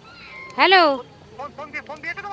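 A cat meowing once: a single loud call about half a second in that rises and then falls in pitch.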